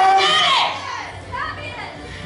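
A loud shouted voice for about the first second, then a fainter voice.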